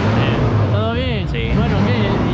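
People talking, with a steady low hum underneath.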